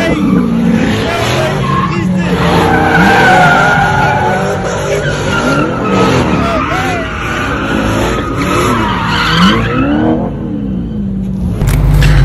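A car spinning doughnuts: its engine revving up and down hard while the tires squeal against the pavement. The noise dies away near the end.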